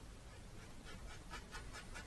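Faint scratchy dabbing of a paintbrush on stretched canvas: a quick run of short strokes, about five a second, starting a little under a second in.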